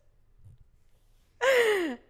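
A woman's short, breathy sigh with a falling pitch, about a second and a half in, after a quiet pause.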